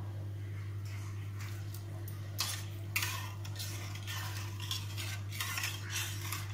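A spatula stirring and scraping against a stainless-steel pan of watery upma, with strokes about two and a half seconds in and again near the end, over a steady low hum.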